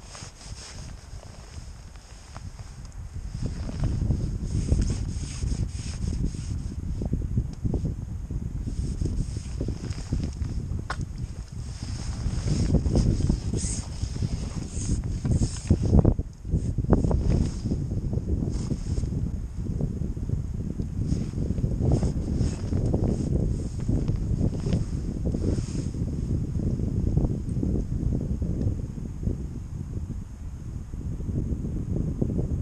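Wind buffeting the microphone in gusts, a heavy low rumble that picks up about three seconds in and keeps surging and dropping.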